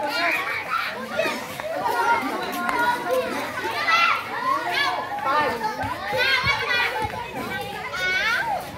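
A crowd of children talking and calling out at once, many high voices overlapping without a break.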